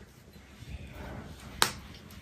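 Quiet, with one sharp click about one and a half seconds in.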